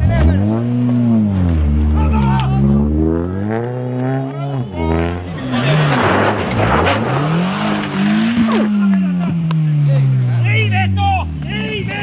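Rally car engines revving hard in rising and falling bursts. About six seconds in, a car slides through a snowy corner with a rush of spraying snow, and its engine note then falls steadily as it passes. Voices come in near the end.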